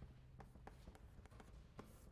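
Chalk writing on a blackboard: faint, irregular taps and short scrapes as letters are written.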